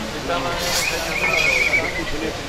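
Spectators' voices shouting and calling over one another, with a single high, wavering call or whistle rising above them about a second in and lasting just under a second.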